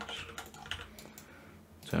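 Computer keyboard keys pressed a few times: scattered light clicks with short gaps between them.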